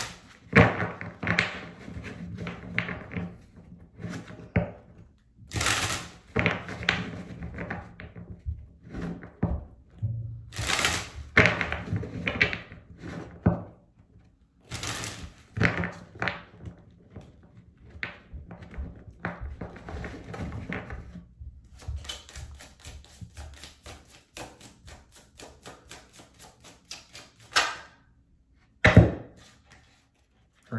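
A tarot deck being shuffled by hand: cards slapping and sliding against each other in irregular bursts, then a quick even run of card flicks for several seconds, and a single loud thump near the end.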